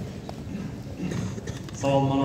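Footsteps knocking on a hard floor as a person walks up to the chalkboard, with a man starting to speak near the end.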